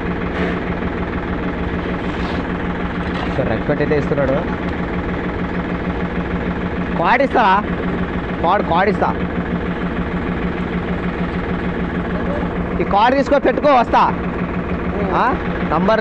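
An engine idling steadily, with voices calling out now and then over it, loudest about seven and thirteen seconds in.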